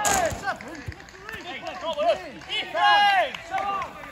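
Men shouting on a football pitch: several drawn-out, rising-and-falling calls overlap, loudest near the start and about three seconds in. A sharp knock comes right at the start.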